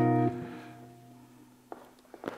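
A guitar chord stops sounding just after the start and its last notes fade out over about a second and a half, with a faint click near the end.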